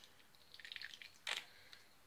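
Eye wash solution squeezed from a plastic bottle into a small plastic eye cup: a faint trickle and patter of liquid, then a single short click a little past the middle.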